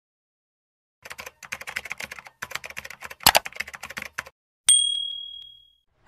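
Typing sound effect: a quick run of key clicks for about three seconds with one louder clack among them, then a single bright bell ding that rings and fades over about a second.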